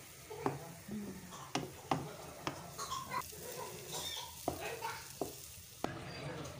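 A spatula stirring and scraping thick, crumbly egg halwa in a non-stick frying pan, with about ten irregular sharp knocks of the spatula against the pan. Under it is a low sizzle of the halwa frying in ghee that has separated out, the sign that the roasting is nearly done.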